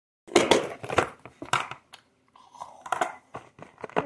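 Plastic container of cookies being handled: a run of irregular rustling, crinkling and crunching noises, broken twice by brief cut-outs to silence.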